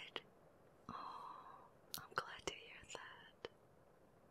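Soft whispering in two short stretches, with a few small sharp clicks in between.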